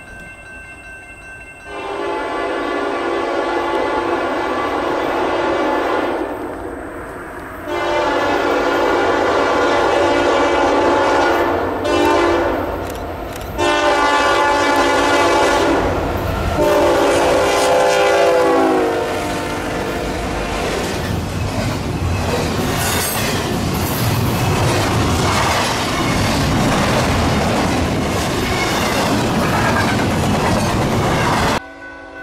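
Union Pacific diesel freight locomotives' multi-chime air horn sounding several long blasts as the train approaches, the pitch dropping as the lead locomotives pass a little after halfway. Then the rumble and clatter of double-stack intermodal container cars rolling by.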